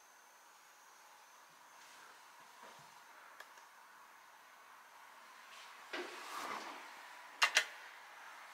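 Faint room tone, then a soft rustle and two sharp clicks close together near the end: the red push button of a museum audio-tour station being pressed, which starts the recorded narration.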